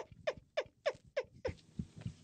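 A dog barking rapidly in short high yaps, about three a second, each yap falling in pitch.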